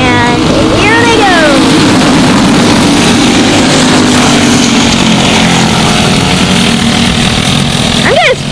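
A pack of racing karts with Briggs & Stratton LO206 single-cylinder four-stroke engines running at speed around the track, a steady loud drone of several engine notes overlapping.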